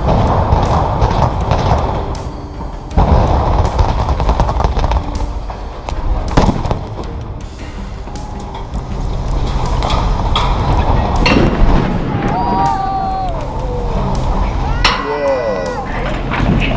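Explosive demolition charges going off in a concrete mill elevator: loud bangs at the start, about three seconds in and about six seconds in, with a low rumble between and after as the structure comes down.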